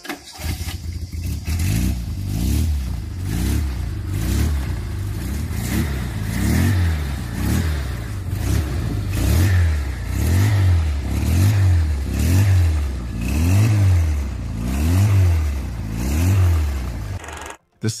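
Shifty 900 motorcycle's Fiat 127 four-cylinder car engine being revved over and over, its pitch climbing and falling back about once a second. The sound cuts off suddenly near the end.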